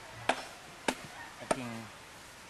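Wood carving by hand: a blade chopping into a block of wood, three sharp strikes at a steady pace of about one every 0.6 s.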